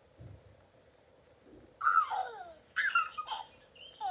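Birdsong sound effect: short downward-swooping whistled chirps in quick groups, beginning about halfway in after a faint, near-quiet start.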